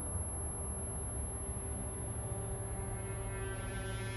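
Dark, droning film-score underscore: a steady deep hum with held tones layered above it, growing fuller toward the end.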